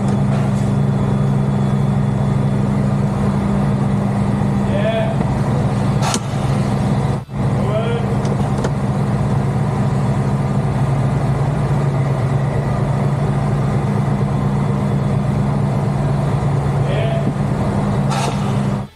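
Heavy truck's diesel engine idling, a steady low hum heard inside the cab, with a brief break about seven seconds in.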